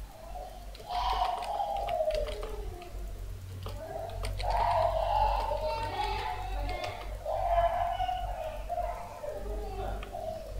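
Keyboard keys clicking now and then as a terminal command is typed, over faint background music with wavering tones and a steady low hum.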